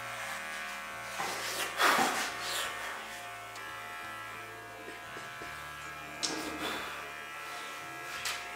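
Electric hair clippers buzzing steadily while shaving a head bald; the low hum shifts slightly about five and a half seconds in.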